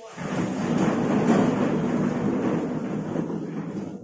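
A class of students standing up at once: plastic chairs and desks scraping and shuffling on the floor, a steady noisy rumble that swells about a second in and eases toward the end.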